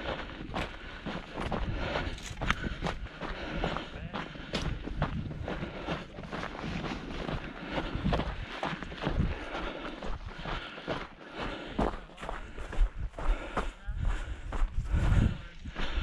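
Footsteps of a person walking at a steady pace over dry, gravelly dirt, crunching through dry grass and brush.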